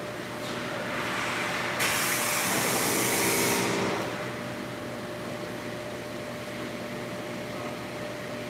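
Pressure washer spray hissing. It builds about half a second in, turns loud and sharp for about two seconds, and stops about four seconds in, over a steady mechanical hum.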